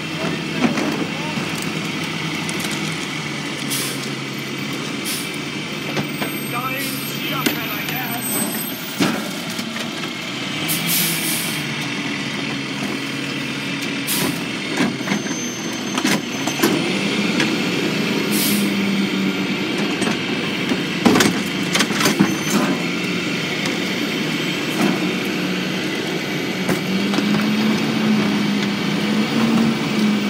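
Rear-loader garbage truck running its hydraulics: the manual cart tipper lifts and dumps plastic garbage carts into the hopper with repeated bangs and clatter. The engine rises in pitch twice as the hydraulic packer cycles to compact the load.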